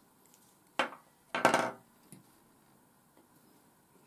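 Handling noise of a laser-cut card model on a glass tabletop: two brief knocks and scrapes about half a second apart, the second a little longer.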